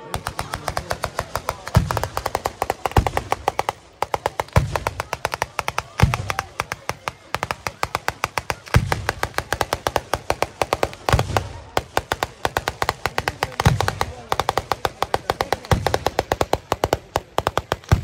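Ground-level fireworks barrage: a rapid string of sharp bangs, several a second, with heavier booms every second or two and a couple of brief breaks.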